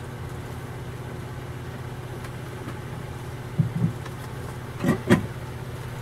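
A steady low hum, with two brief double bursts of sound, one about three and a half seconds in and a louder one about five seconds in.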